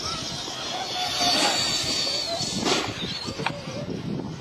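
Electric motors of radio-controlled monster trucks whining at a high pitch. The whine holds steady for over a second, then drops in pitch, and a second, slightly lower whine follows.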